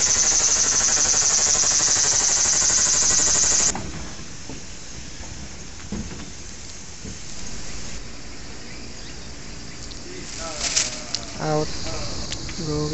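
A cicada buzzes loudly and high-pitched, with a fast pulsing texture, then cuts off suddenly about four seconds in. Faint background follows, with a few quiet voices near the end.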